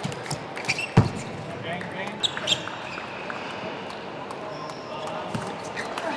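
Table tennis ball clicking and bouncing in a large sports hall: a handful of sharp taps, the loudest about a second in, over a steady murmur of voices.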